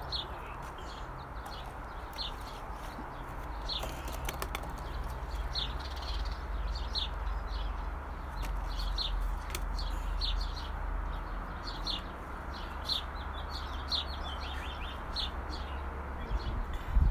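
A small bird chirping over and over, short high falling chirps about once a second, over a steady low background rumble.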